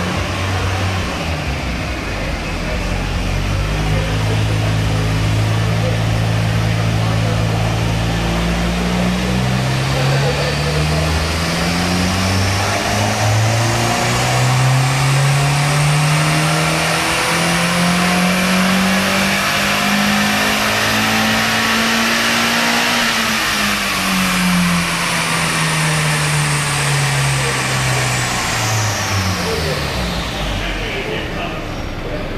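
Mazda MX-5's 1.8-litre four-cylinder engine on a chassis dyno run. Its pitch steps up through the gears over the first ten seconds or so, then climbs in one long full-throttle pull to a peak about two-thirds of the way through and winds back down near the end. A thin high whine from the spinning wheels and rollers rises and falls with it.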